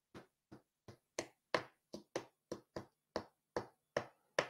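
Slow typing on a computer keyboard: about a dozen separate key presses, roughly three a second and unevenly spaced.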